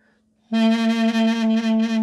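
A mey, the Turkish double-reed pipe, comes in about half a second in and holds one low note with a pulsing vibrato. It is a demonstration of the 'azalarak' (decreasing) vibrato exercise.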